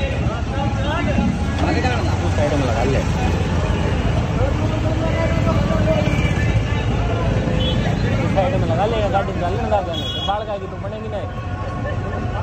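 Several motorcycle engines running at low speed in a slow-moving procession, a steady low rumble, with people's voices talking and calling out over it throughout.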